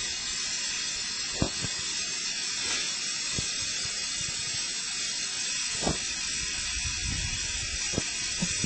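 Steady hiss of pressurised water escaping from a leaking joint in a water-supply pipe, with a few light knocks.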